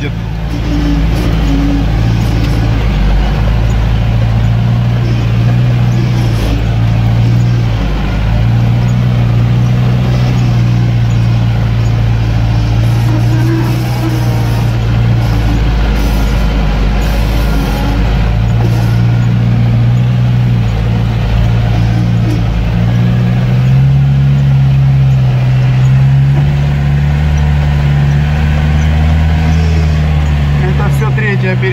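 UAZ off-roader's engine running steadily under load, heard from inside the cabin as it crawls through deep mud and water. About three quarters of the way in, the engine note rises slightly in pitch and deepens as the throttle opens.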